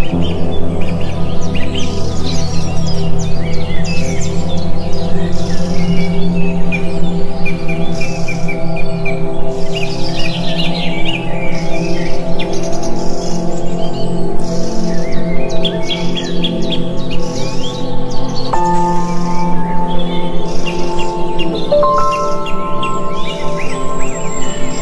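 Birds chirping and calling over slow ambient music of long held notes; the held notes shift to new pitches twice near the end.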